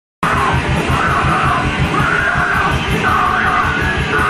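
Heavy, hardcore-style rock music with fast pounding drums, distorted guitars and shouted vocals, kicking in loud just after the start.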